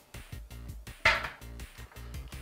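A metal food tin set down on a hard tabletop with a single knock about a second in, over quiet background music.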